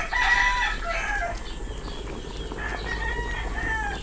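Rooster crowing twice: one long crow right at the start and another from about two and a half seconds in.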